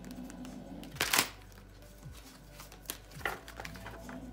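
A deck of tarot cards being shuffled by hand, with a sharp card snap about a second in and a softer one a little past three seconds, over quiet steady background music.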